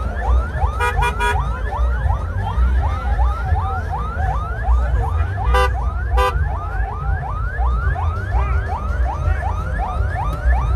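Electronic siren sounding a fast repeating rising whoop, about three a second, over a low rumble. Short horn blasts break in: three quick ones about a second in and two more around the middle.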